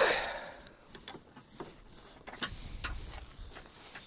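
A loud sighing "eh" at the start, then faint scattered clicks and rustles from a climbing rope being handled at a car's metal tow hook, with a brief low rumble of wind on the microphone past the middle.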